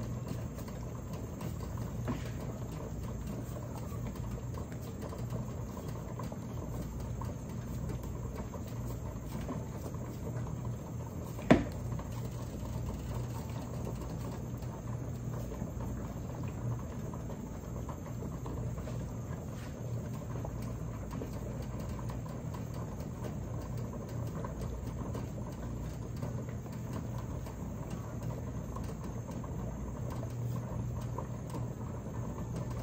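Large steel pot of water at a rolling boil on an electric stove: steady bubbling with a low hum underneath and faint crackle. One sharp click stands out about eleven seconds in.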